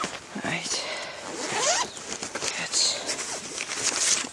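A zipper pulled close to the microphone, a quick run of rasping scrapes mixed with rustling as things are handled.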